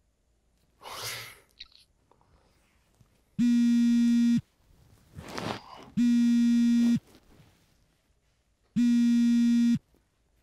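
Mobile phone buzzing with an incoming call: three steady one-second buzzes, about two and a half seconds apart. A soft breath or sigh is heard about a second in and again just before the second buzz.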